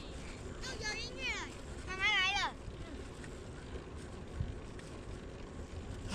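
Wind rushing over the microphone and a low rumble from a bicycle rolling along a paved path. A person's high-pitched, wavering squeals come about a second in and again, louder, about two seconds in.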